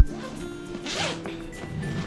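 Backpack zipper being pulled open, a short zip about a second in, over quiet background music.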